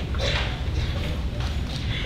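Auditorium room noise before the band plays: a steady low rumble with scattered small clicks, knocks and rustles, and a faint voice in the hall.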